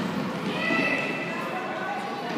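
Children's voices shouting and calling in an echoing sports hall during play, with one high-pitched call held for about a second, starting about half a second in.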